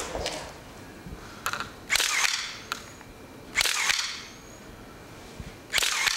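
Photographers' still cameras clicking during a posed group photo: several shutter releases with film winding, in short clusters about every second or two.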